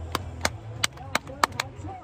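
Hands clapping, about six sharp, unevenly spaced claps in a pause between cheering chants.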